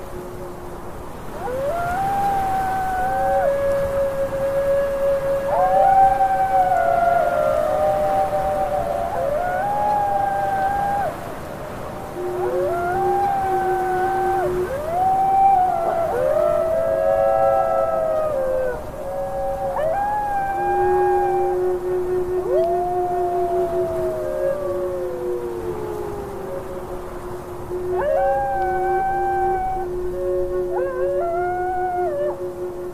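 A pack of wolves howling in chorus: several long howls overlap, each rising into a held note, and one long howl slides slowly down in the second half.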